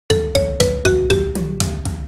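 Background music: quick repeated notes, about four a second, each sharp at the start and fading, over a low bass.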